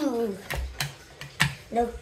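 Plastic spinner wheel of the Game of Life Super Mario board game clicking a few times, the clicks spacing out as the wheel slows to a stop. A voice trails off at the start, and a short "No" comes near the end.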